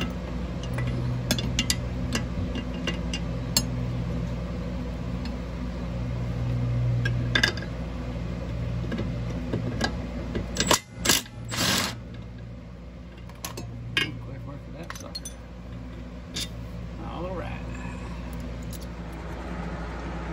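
Wrench clicking and metal tools clinking on the lower shock-absorber mount bolts of a Jeep Cherokee's front suspension as the 13 mm nuts are undone, in short scattered clicks over a steady low hum. A brief cluster of louder knocks comes about eleven seconds in.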